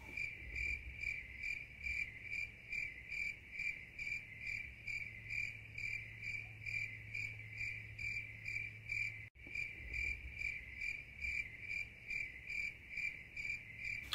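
The stock 'crickets' sound effect for silence: a high cricket chirp repeating about three times a second, with a brief dropout a little past the middle. It starts and cuts off abruptly.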